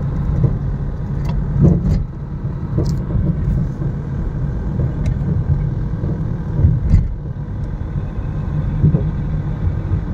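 Steady low rumble of a car's engine and tyres on the road, heard from inside the cabin while driving, with a few short thumps around two seconds in and again about seven seconds in.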